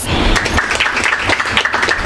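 Audience applause: many people clapping at once, a dense, steady clatter of hands.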